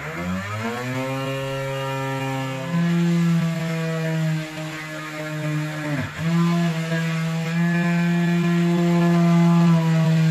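Small electric motor of a homemade rechargeable flexible-shaft rotary tool starting up with a whine that rises in pitch, then running steadily, its note stepping up about three seconds in. About six seconds in the pitch dips briefly and recovers as the drill bit bores into PVC pipe.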